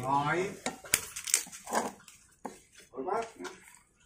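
A plastic spatula stirring in a metal pot, knocking against it with a few sharp clacks about a second in. Several short vocal sounds come and go over the stirring, the loudest right at the start.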